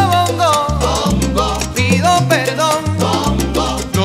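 Salsa music: a band plays a melody line over held bass notes that change about every half second, with steady percussion.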